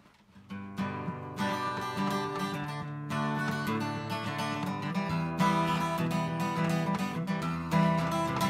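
Solo acoustic guitar strummed, playing the intro of a country song; the strumming starts about half a second in and grows fuller and louder.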